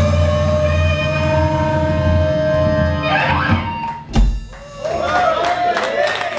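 Live rock band with electric and acoustic guitars, bass, keyboard and drums holding the final chord of a song. The chord breaks off about three seconds in, and one last low hit follows a second later. Voices start near the end.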